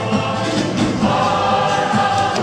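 A choir singing a Ukrainian folk song with instrumental accompaniment, at a steady loud level.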